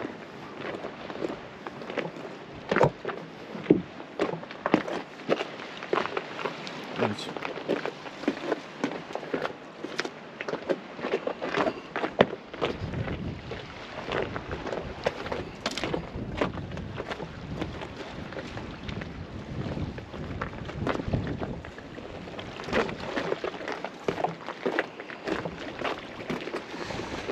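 Small waves lapping and washing against the breakwater rocks, with scattered sharp clicks and splashes. From about halfway, wind buffets the microphone with a low rumble.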